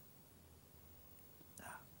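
Near silence: room tone in a pause of speech, with one faint short breath-like noise about three-quarters of the way through.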